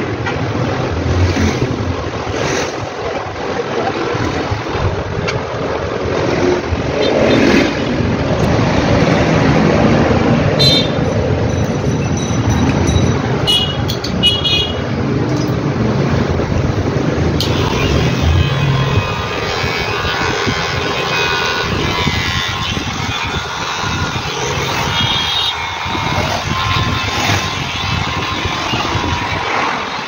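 Continuous street traffic noise with vehicle horns.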